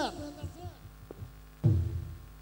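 Intro sound effects: the echoing tail of a processed voice-over dies away over a steady low hum, then a deep bass boom hits about one and a half seconds in.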